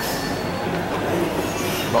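Steady background hum and hiss of a busy indoor shopping mall, with no clear voice or distinct event standing out.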